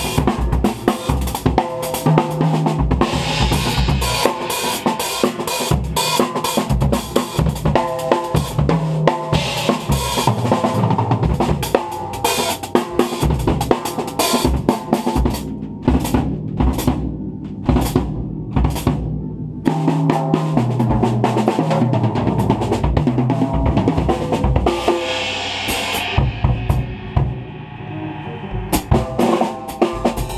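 Acoustic drum kit (Lignum drums, Rathkamp snare, Sabian cymbals) played fast and busy with sticks: bass drum, snare, toms and cymbals, recorded on a GoPro's built-in microphone. About halfway through the playing thins to separate, spaced hits for a few seconds before the dense grooves return, with fewer cymbal strokes near the end.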